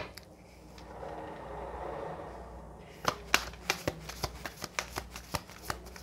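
A deck of tarot cards being shuffled by hand: a soft sliding rustle, then from about three seconds in a quick run of flicking clicks as the cards fall.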